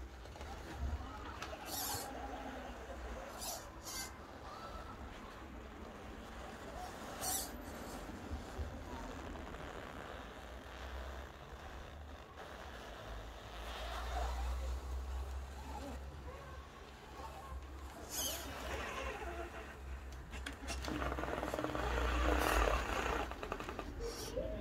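Absima Sherpa RC scale crawler driving slowly over a wooden board, its small electric drivetrain whirring, with occasional sharp clicks and knocks as the tyres and chassis work over the boards. A low steady rumble sits underneath, and the noise is busiest near the end.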